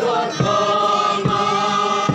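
A crowd of people walking in procession sings a hymn together, on long held notes. A few dull thumps break in, two of them about half a second and a second and a quarter in.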